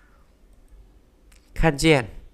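A quiet pause of room tone, broken by a faint click about a second and a half in, plausibly a mouse click advancing a slide. A man's voice follows, speaking a short word near the end.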